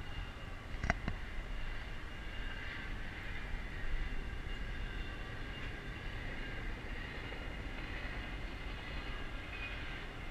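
Distant double-stack freight train rolling past: a steady rumble with faint, high, held tones over it, typical of wheel squeal. A single sharp click about a second in.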